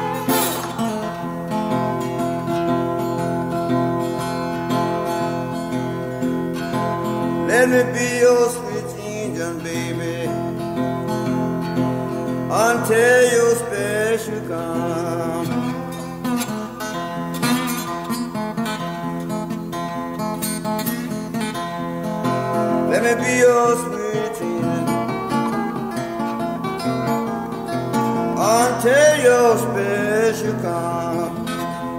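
Acoustic blues guitar playing a steady picked accompaniment in the Memphis blues style. Four times, a short phrase bends up and down in pitch over it.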